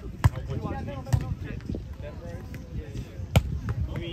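Volleyball being struck by hands and forearms during a rally: three sharp slaps of the ball, one just after the start, one about a second in, and the loudest near the end.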